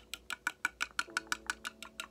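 Rapid, even tapping on a small flower-patterned teapot held close to the microphone, about nine sharp taps a second.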